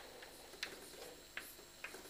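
Chalk on a blackboard while writing: a few faint, sharp taps as the chalk strikes the board, about three in two seconds.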